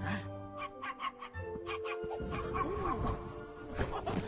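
Animated-film orchestral score with held notes, over a cartoon stork's bird-like vocal sounds and short comic sound effects.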